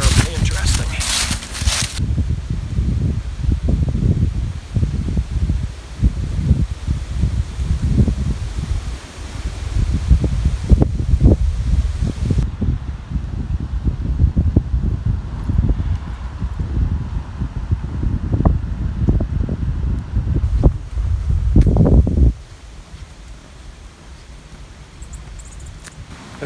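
Wind buffeting the microphone: a loud, uneven low rumble that rises and falls, with a few short knocks in it, and cuts off suddenly about 22 seconds in.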